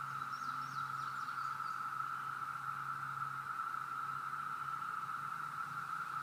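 A chorus of periodical cicadas singing in a meadow: one steady, unbroken drone, with a faint low hum under it for the first half.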